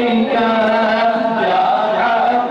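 A group of men chanting together in unison, with long held notes.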